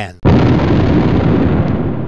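A six-inch Armstrong breech-loading coastal gun firing: a sudden loud blast just after the start, then a long rumble that fades slowly.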